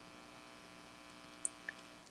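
Faint steady electrical mains hum from the recording setup, broken by two small ticks close together about one and a half seconds in.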